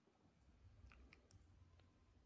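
Near silence: room tone with a few faint clicks near the middle.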